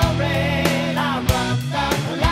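Melodic hard rock song: electric guitars and a drum kit playing a steady beat, with drum hits roughly every half second and a pitch-bending melodic line above.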